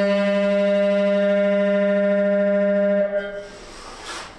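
Saxophone holding one long, steady low note rich in overtones that stops about three seconds in and fades briefly in the room's echo, followed by a short hiss near the end.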